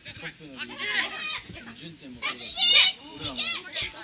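Men's voices shouting and calling out during a football match, with one loud, high-pitched yell a little past the middle.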